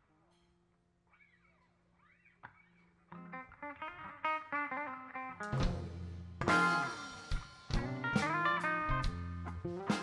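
Live rock band starting a song: a faint low note is held, then an electric guitar begins picking a line about three seconds in, and drums and bass join with the full band about halfway through.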